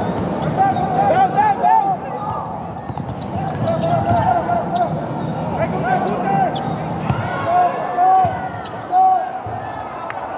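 Basketball game in play: sneakers squeaking repeatedly on the court and the ball bouncing, over steady background noise.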